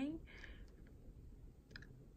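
A short breath as a woman's voice trails off, then a few faint clicks near the end, such as mouth clicks or light handling of the phone.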